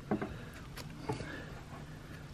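Faint, soft scratching and a few small ticks as a pen-style craft knife cuts into a leathery snake eggshell.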